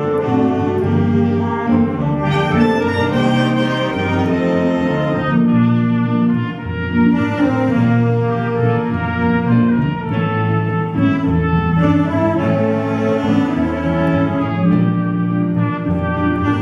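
Swing big band playing, saxophones and brass in long held chords, with a trumpet taking the solo line.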